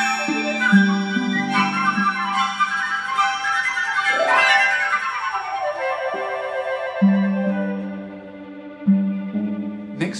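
Two flutes and a piccolo playing fast, bright runs and trills over held accompaniment from violins and harp, with a quick upward run about four seconds in that spills into a falling cascade of notes.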